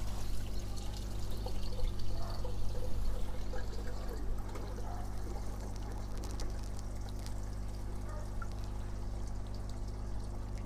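Water streaming and dripping off a broccoli plant's leaves as it is lifted out of a fish tank, busier for the first four seconds or so, then settling to a lighter patter of drips back into the tank. A steady low hum runs underneath.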